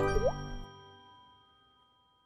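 Tail of a TV channel's logo jingle: a quick swoop down and back up in pitch, then held chime-like tones that fade out about a second in.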